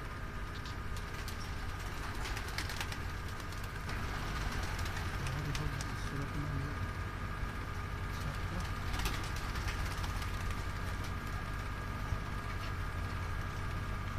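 Domestic pigeons cooing softly, a few low coos around the middle, over a steady low background hum with a few faint clicks.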